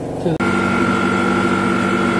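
Perfume chiller mixing machine starts running with a steady electric hum and several constant tones, cutting in suddenly about half a second in.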